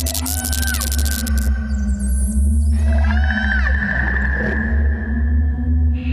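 Electronic music: a deep, steady bass drone under a held low tone, with short synth tones that glide up and then fall away, one group at the start and a denser cluster about halfway through.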